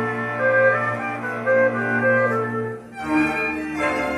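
Live string orchestra playing an instrumental passage. A low note from cellos and double bass is held under a moving melody; the sound thins out briefly just before three seconds in, then a new chord enters.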